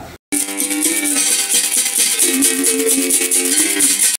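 Capoeira music: a berimbau's ringing string tones over the steady shake of a caxixi rattle. It starts abruptly just after a brief silence.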